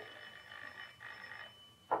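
Electric doorbell ringing in two short bursts, the second fading out about a second and a half in: a caller at the flat's door.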